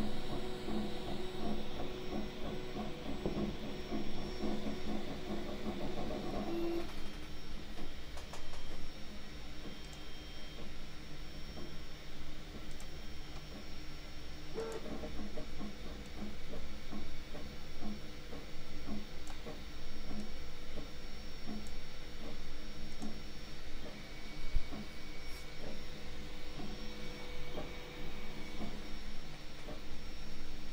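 Panospace desktop filament 3D printer printing: stepper motors whir with shifting tones and quick ticks as the print head and bed move, over the steady hum of its cooling fan.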